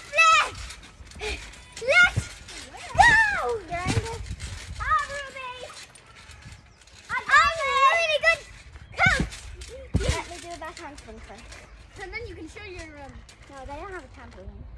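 High-pitched children's voices in short excited calls and squeals, their pitch sliding up and down, with a few dull thumps of bouncing on a trampoline mat, the clearest about three seconds in and again around nine to ten seconds in.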